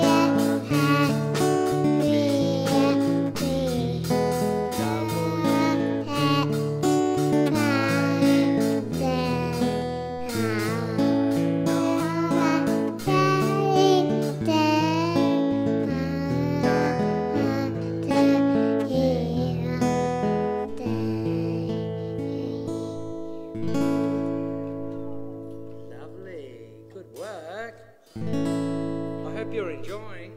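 Acoustic guitar strummed in chords while a young child sings along in a wavering voice. The singing drops away and the guitar fades out toward the end as the song finishes.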